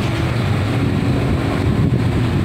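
Strong wind ahead of a typhoon blowing across a phone microphone: a loud, steady, low rumbling buffet.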